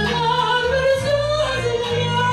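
A woman singing into a microphone through a PA, holding long notes over a recorded backing track with a steady bass line.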